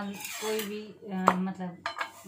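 Metal spatula scraping and knocking against a tawa griddle as a paratha is lifted and turned, with one sharp clink a little past a second in and a smaller one near the end.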